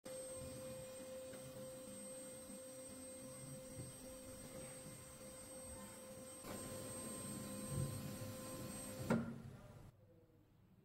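A4 DTF printer being switched on: a steady electrical hum, joined about six and a half seconds in by its mechanism starting to run, with a sharp click just after nine seconds.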